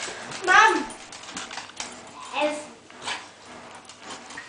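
A dog whining in three short high-pitched cries. The first, about half a second in, is the loudest and falls in pitch.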